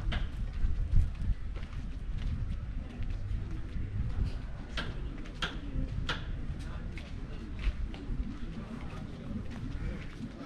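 Footsteps on a sandy dirt path at a walking pace, a little under two steps a second, over a steady low rumble on the microphone.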